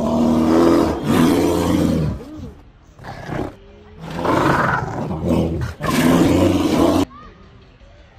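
Asiatic black bear making loud, rough, drawn-out calls in several bursts, the last cutting off abruptly about seven seconds in.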